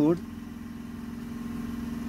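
Komatsu PC400 excavator's diesel engine idling steadily, heard as an even low hum from inside the cab.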